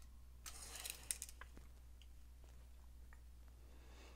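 Faint handling sounds of a tape measure and a chef's knife: a brief light scrape and a few small clicks between about half a second and a second in, then near silence.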